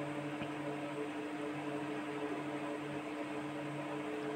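A steady low hum made of a few constant tones, over an even hiss.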